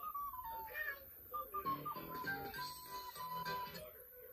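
Children's cartoon soundtrack music playing faintly from a TV speaker: a single thin, whistle-like tune that glides down and then holds notes, with short lower voice-like phrases, cutting out just at the end.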